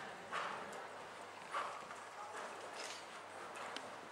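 Horse's hooves on the sand footing of an indoor arena as it trots, with three louder short sounds about a second and a quarter apart.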